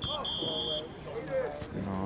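A referee's whistle: a short blip and then a single steady blast of about half a second, both in the first second, with voices going on underneath.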